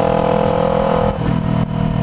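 Kawasaki Ninja 250R parallel-twin engine running loud while riding. The exhaust has come out of place and is running like a straight pipe. Its pitch holds steady, then shifts about a second in.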